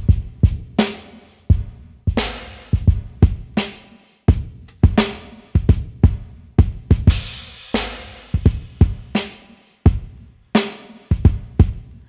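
Hip-hop drum pattern with kick drum, snare and hi-hats playing back from an Akai MPC Renaissance at 86 BPM. It is a repeating beat of sharp hits, each with a short decay, used to audition a layered kick drum processed for small speakers.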